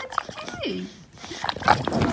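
English bulldog making short falling vocal grumbles and snuffling sounds while mouthing a person's hand in play, with a flurry of sharp snorts and mouth noises near the end.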